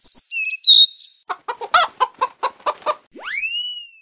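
Cartoon sound effects for an animated channel-logo intro: high whistled chirps, then a quick run of about ten clucks like a hen, then a rising whistle glide.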